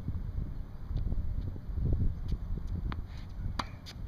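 Wind rumbling on the microphone, with a few sharp pops near the end as a tennis ball is struck by a racket on a backhand.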